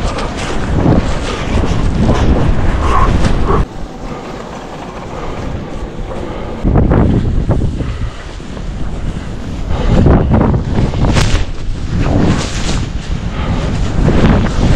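Wind buffeting the microphone of a skier's body-mounted camera while skiing fast through deep powder: a loud, gusty rumble. It drops suddenly about four seconds in and comes back loud about three seconds later.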